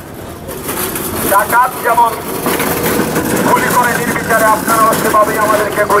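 A man's voice speaking through a handheld megaphone, in phrases with short breaks, over steady outdoor background noise.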